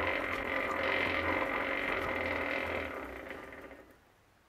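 Home-built dyno's brake wheel turned by hand, whirring steadily as it spins, then fading away near the end.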